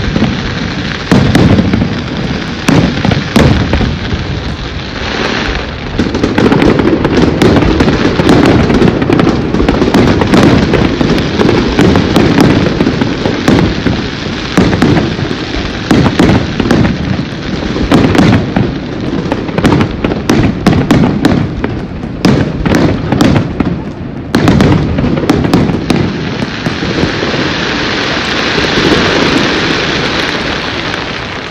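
Aerial fireworks going off in a dense barrage: many sharp bangs of shell bursts in quick succession over a continuous crackle. Near the end the bangs thin out into a steadier crackling hiss.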